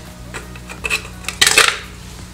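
Metal ice tongs clinking against ice cubes and the inside of a stainless steel ice bucket while picking up ice: a few light clicks, then a louder clatter about one and a half seconds in. A low steady hum runs underneath.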